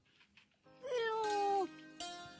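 A single drawn-out, whining, meow-like cry that rises briefly, slides slowly down and then breaks off. It sounds over soft background music that comes in about half a second in.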